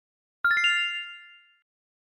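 A bright chime sound effect: four quick ringing notes that step up in pitch, struck about half a second in, then fading out within a second.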